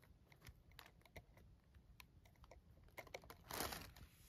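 Faint, irregular small clicks and taps from a fingertip handling a bangle bracelet in its jewellery box, with a brief rustle about three and a half seconds in.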